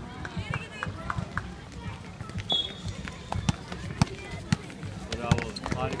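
Basketball being bounced and players' feet hitting an outdoor court: scattered sharp knocks, more of them in the second half, over spectators' and players' voices in the background.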